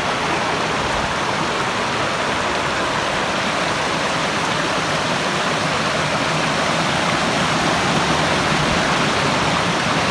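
Shallow monsoon stream rushing over and between boulders in a rocky bed, a steady unbroken splashing.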